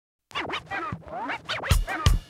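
Opening of a music track with turntable scratching: quick rising and falling sweeps, then a heavy kick drum comes in near the end.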